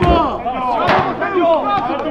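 Men's voices shouting on a football pitch, with one sharp knock about a second in.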